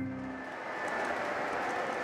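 Model trains running on the layout's track: a steady rolling hiss, with background music fading out at the start.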